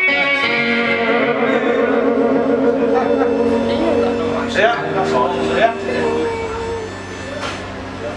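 Electric guitar played through an amplifier, with long chords left to ring: one held for about four seconds, then a second, shorter chord that dies away near the end.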